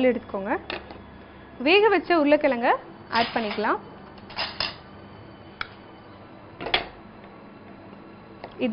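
A spoon scrapes boiled potato pieces out of a plastic bowl into a larger bowl: two short scraping sounds a little past the middle, then a couple of light clicks of spoon against bowl. A woman speaks a few words at the start.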